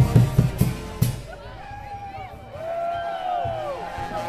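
A street band of drums and brass playing amid a crowd. Heavy drum beats come in the first second, then quieter held, bending notes, with voices throughout.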